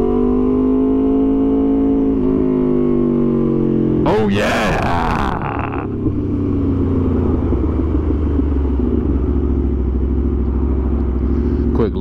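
Aprilia RSV4 Factory's 1100 cc V4 with an SC-Project exhaust, its note falling steadily under engine braking as the bike slows. A short loud burst of noise comes about four seconds in, then a low steady rumble near idle as it rolls toward a stop.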